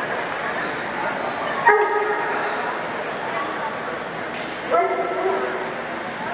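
A dog barks twice, two short sharp barks about three seconds apart, over a steady murmur of background voices.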